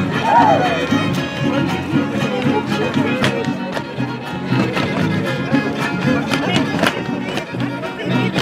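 Live folk dance music from a violin and a small strummed guitar, playing a repeating tune, with voices in the background.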